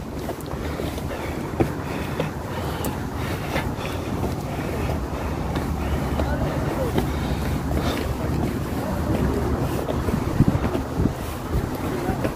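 Wind buffeting a phone microphone, a loud, uneven low rumble throughout.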